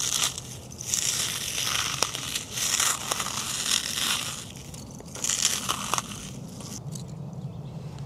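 Carbonized Twinkie halves, turned to brittle, porous charcoal, crushed and crumbled between the fingers: a dry, gritty crunching in two bouts, the first long and the second shorter, with a few sharp cracks.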